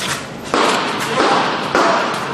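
Three dull thuds ringing out in a large, echoing indoor range: one at the start, one about half a second in, one near the end.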